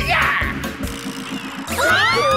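Cartoon background music with a steady beat, with a quick whoosh sound effect at the start as a character dashes away. Near the end, gliding sound-effect tones that rise and fall set in.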